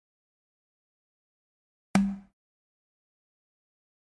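One short, sharp click with a low tone that dies away quickly, about halfway in: the game's sound effect marking a newly drawn ball.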